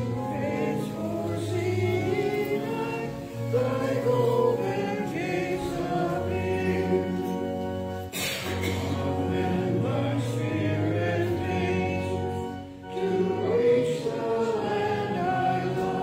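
A congregation singing a slow hymn in sustained, held notes. A brief knock is heard about halfway through.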